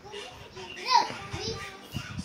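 Children's voices talking and playing in the background, with one loud high-pitched call about a second in.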